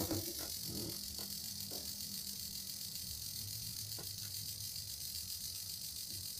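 Small DC gear motor running under load, a steady low hum as it winds a thread onto its shaft and lifts a stack of metal discs. A couple of faint ticks sound over it.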